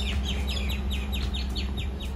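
A songbird calling a quick run of about nine short, descending notes, roughly five a second, over a steady low hum.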